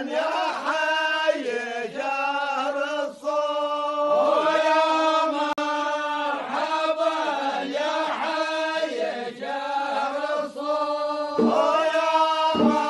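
A man's voice chanting a slow melody in long held notes that bend and waver, unaccompanied for most of the time; a lower accompaniment comes in near the end.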